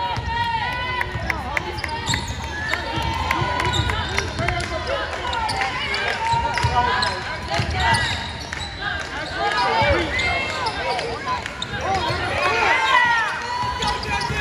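A basketball being dribbled on a hardwood court, with sneakers squeaking as players run and cut, and voices of players and coaches calling out over the play.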